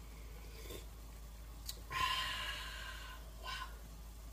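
A person tasting soup from a spoon: a breathy "ahh" of satisfaction lasting about a second starts about two seconds in, followed by a short soft "wow".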